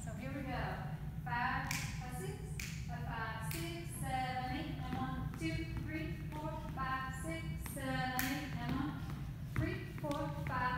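A woman's voice vocalizing the rhythm of a swing dance routine in sung, scat-like syllables while she dances, with shoes stepping and tapping on a wooden floor. A steady low hum runs underneath.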